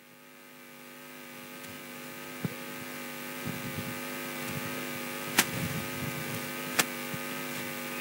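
Steady electrical mains hum from the microphone and sound system, slowly swelling in level through a pause in the speech, with a few sharp clicks.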